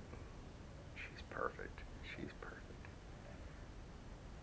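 A man's voice, very soft and close to a whisper, saying a few words from about a second in, over a low room background.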